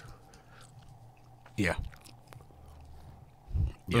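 A pause in close-miked conversation: a steady low room hum with a few faint clicks, one short 'yeah' about halfway through, and a soft low thump near the end just before talking starts again.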